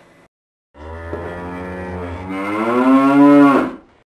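A cow mooing: one long call of about three seconds that rises in pitch and grows louder toward its end, then stops.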